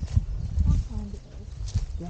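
Footsteps on a dry earth path, uneven thuds with the shuffle of leaf litter, over low wind buffeting on the microphone.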